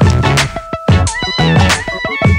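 Backing music with a steady beat of heavy low drum hits about twice a second, under a high lead line that steps and slides in pitch.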